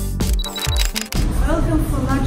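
Music with a beat and sliding bass notes that cuts off suddenly about halfway through. It gives way to a woman starting to speak over room noise.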